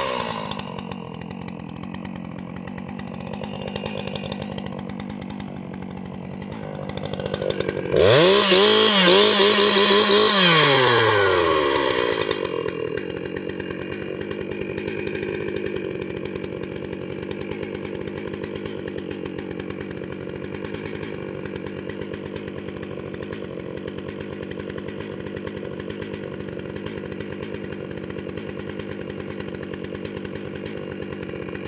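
Stihl MS 661 C-M two-stroke chainsaw with a 28-inch bar idling, revved up to high speed for about four seconds about eight seconds in, then dropping back to a steady idle.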